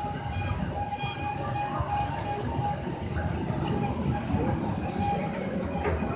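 Amusement-park ambience heard from a Ferris wheel car high above the park: a steady low rumble with faint music carrying a held tone.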